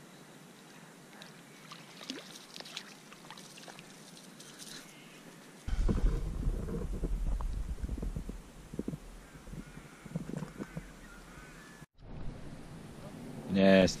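Handling noise as a tiny rainbow trout fingerling is released by hand into shallow water: a low rumble on the microphone starts suddenly about halfway through, with small knocks and splashes over the next few seconds. The first few seconds are quiet.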